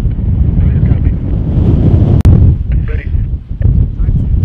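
Wind buffeting the microphone in a dense, loud low rumble, with one sharp click a little past two seconds in.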